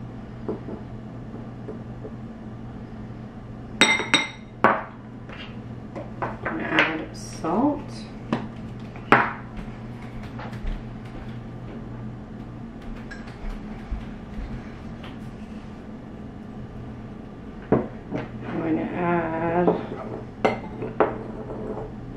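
A metal spoon clinking against a ceramic mixing bowl and other kitchen things in scattered sharp strikes, most of them in the first half, then a quiet stretch, and more clinks near the end.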